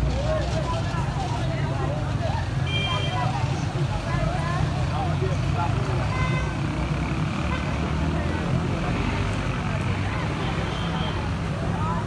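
Outdoor street ambience: a steady low rumble of traffic with distant, indistinct voices. There are short high beeps about 3 and 6 seconds in.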